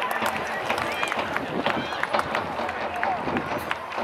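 Football stadium crowd: steady murmur with scattered, irregular claps and a few raised voices.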